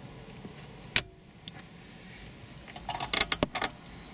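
Hard plastic clicks and rattling as a car radio head unit is handled in its dashboard opening: one sharp click about a second in, then a quick cluster of clicks and rattles near the end.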